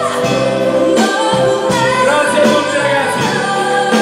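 Live pop band playing with electric bass and drums while a woman sings lead into a microphone in long held notes over a steady beat.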